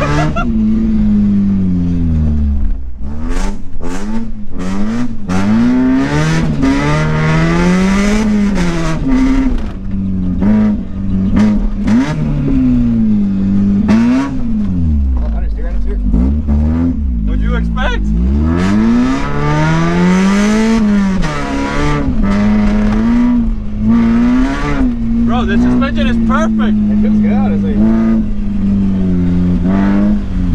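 Mazda Miata's 1.6-litre four-cylinder engine heard from inside the cabin, driven hard through the gears of its 5-speed: the pitch repeatedly climbs and drops every second or two as it revs and shifts. Frequent sharp knocks and rattles sound over the engine.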